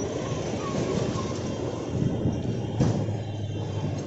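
Steady street traffic noise from a busy roadside, with a short sharp knock about three seconds in.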